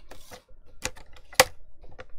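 Card panel being handled and set down on a plastic paper trimmer: a brief rustle, then a few sharp taps and clicks, the loudest about one and a half seconds in.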